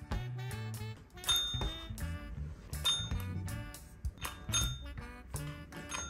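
A dog's pet training bell pressed by a Bichon Frise's paw, dinging three times about a second and a half apart over background music.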